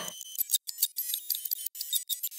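Outro logo sound effect: thin, high-pitched digital glitch sounds, stuttering clicks and tinkles with no bass. It starts just as the dance music cuts off at the beginning.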